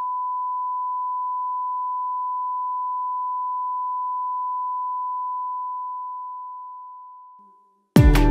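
A single steady, high, pure electronic tone, like a long beep, held for several seconds and then fading away a couple of seconds before the end.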